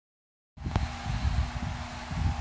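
After half a second of silence the sound cuts in: low, uneven rumbling and knocks from a handheld phone's microphone being handled, over a steady room hum, with one sharp click just after it starts.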